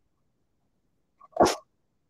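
A single short, sharp burst of noise about one and a half seconds in, with a faint blip just before it, otherwise near silence.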